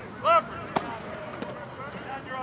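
A short shouted call, then a single sharp smack about three-quarters of a second in, with a few fainter clicks after it.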